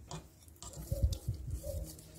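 A wire whisk stirring cream into condensed milk in a stainless steel pot: quiet, irregular soft knocks and faint ticks of the whisk against the pot, starting about half a second in.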